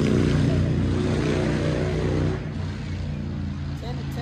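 Steady low drone of a motor vehicle's engine, easing off a little past halfway.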